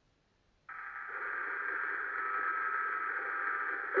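Steady hiss of a recorded telephone line, cutting in suddenly under a second in, with a faint steady tone or two in it.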